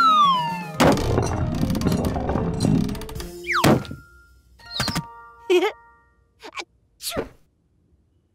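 Cartoon sound effects: a falling whistle ends in a heavy thud about a second in as the cake lands, followed by a rumble lasting a couple of seconds. Then come several short swooping whooshes with brief tones.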